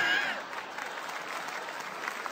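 Live comedy audience applauding in reaction to a punchline: louder for the first half second, then steadier and softer.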